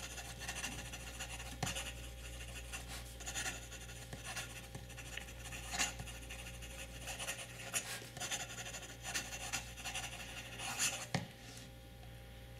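Steel double-broad (BB) Bock fountain pen nib scratching across notebook paper in a string of short, irregular cursive strokes.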